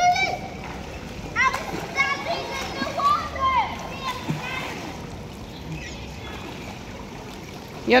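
Children splashing and kicking in a swimming pool, with children's high voices calling out over the first few seconds, then only the wash of water.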